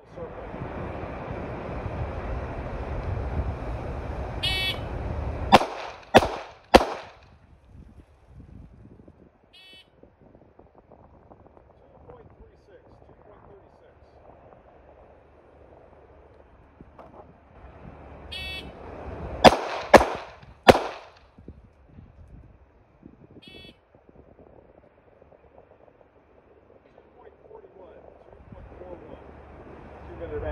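Two strings of three pistol shots, about half a second apart, each string coming about a second after a short electronic shot-timer beep. This is the failure drill: two shots to the body and one to the head. The second string comes about fourteen seconds after the first.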